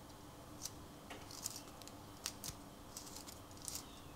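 Faint, scattered small metallic clicks and scrapes as fingers unscrew the knurled trigger-tension adjuster on the back of a cheap double-action airbrush.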